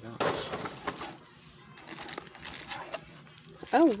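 Booster packs being pulled out of a cardboard Elite Trainer Box: foil wrappers and cardboard scraping and rustling in several short bursts.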